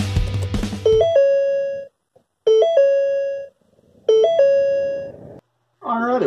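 The tail of a rock intro tune with drums cuts off about a second in, followed by an electronic doorbell-like chime sounding three times, about a second and a half apart. Each chime is a quick flick between notes that settles on one held tone and fades out.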